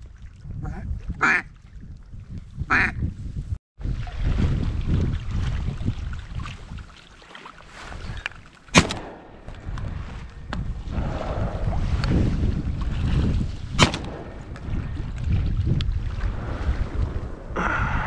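A few duck quacks in the first three seconds, then wind rumbling on the microphone. Two shotgun shots, the first about halfway through and the second about five seconds later, the last one bringing down the mallard.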